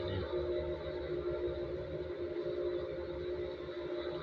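Steady background drone of several held tones over a low rumble, with no distinct events.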